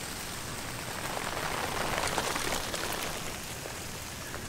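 Overhead garden sprinkler's spray falling on foliage, a steady rain-like hiss that grows louder for a couple of seconds in the middle.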